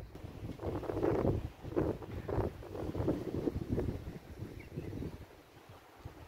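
Wind buffeting the microphone in uneven gusts, a low rumbling rush that surges and eases, dying down near the end.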